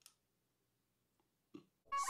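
Near silence, broken only by a faint click at the start and a short faint sound about one and a half seconds in.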